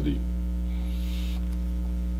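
Steady electrical mains hum, a constant low drone with its overtones stacked above it, with a faint brief hiss about halfway through.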